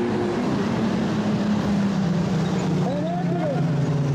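Modified sedan racing engines on a dirt speedway, one engine note falling slowly in pitch over a steady noisy background.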